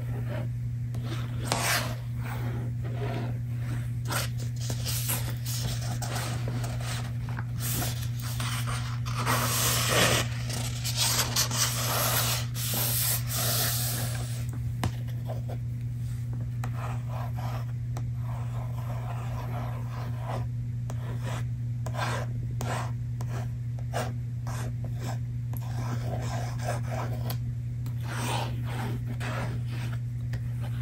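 Hands rubbing and scratching the paper of a book: a string of short, crisp strokes, with a denser, louder stretch of rubbing in the middle. A steady low hum runs underneath.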